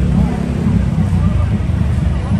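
Crowd chatter over a steady low rumble of vehicle engines idling or creeping along.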